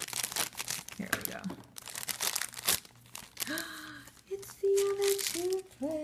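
A crinkly black foil blind-box bag crackling and tearing as it is cut open with scissors and pulled apart for about three seconds. After that, a woman's drawn-out wordless vocal sounds, like excited cooing, take over.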